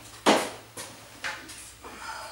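Long wooden strips knocking and scraping against each other as they are picked up by hand. One louder knock shortly after the start, then two fainter ones.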